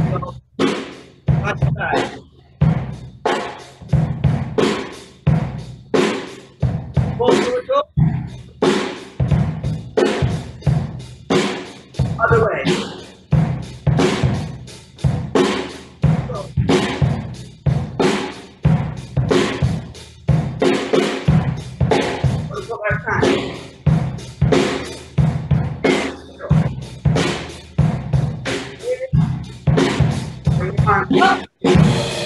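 Ludwig drum kit played live in a steady, repeating beat, the kit's hits coming at an even pace throughout.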